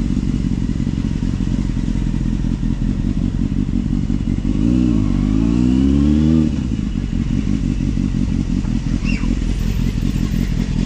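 Motorcycle engine running at low speed. About halfway through the revs dip, then climb for a couple of seconds before dropping back to a steady low rumble.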